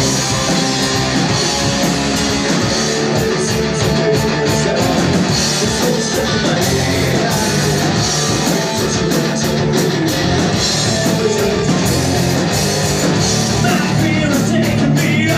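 A rock band playing live and loud: electric guitar, bass guitar and drum kit, steady with no break.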